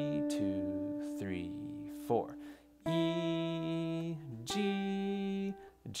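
Acoustic guitar playing single notes of a slow G pentatonic melody, plucked with the thumb: one long held note, then new notes about three seconds and four and a half seconds in, each left to ring. A man's voice speaks briefly over the first note.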